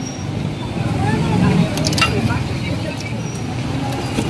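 Busy street ambience: a steady low rumble of vehicle traffic with background voices of a crowd, and a brief click about two seconds in.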